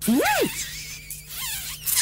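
A kiss in a cartoon: a woman's muffled vocal 'mm' swooping up and down with her lips pressed, wet smooching noise, more muffled wavering voice, and a sharp smack near the end as the lips part.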